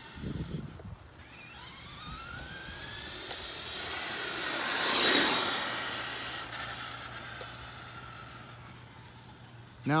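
Traxxas Slash 2WD RC truck's brushed Titan 12-turn motor and drivetrain whining as it accelerates on a 2S LiPo, the whine rising in pitch. It grows louder to a peak with a rushing hiss about halfway through as the truck passes closest, then fades as it drives away.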